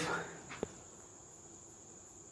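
A faint, steady high-pitched tone in a quiet room, with the tail of a spoken word at the start and a single faint click about half a second in.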